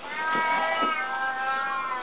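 A high, drawn-out wordless wail from a person's voice, held for nearly two seconds and rising slightly in pitch at its start.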